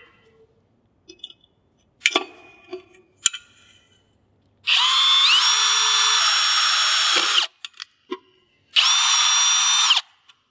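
Power drill boring a 3/16-inch (4.5 mm) hole into a metal pole: a first run of about three seconds whose motor whine steps up in pitch soon after it starts, then a second, shorter run near the end. A few light clicks and knocks of handling come before the first run.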